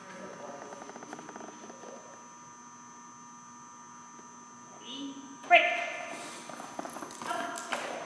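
Light footfalls tapping on a rubber agility floor, then a sudden loud voice call about five and a half seconds in, followed by more short calls, ringing in a large hall.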